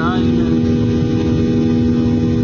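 Airliner cabin noise from a window seat: the jet engines' steady drone, a constant hum over a low rumble, with a brief voice in the cabin right at the start.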